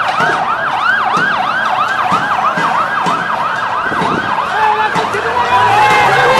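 Siren of a police water cannon truck sounding a fast yelp, its pitch rising and falling about three times a second. Voices join in near the end.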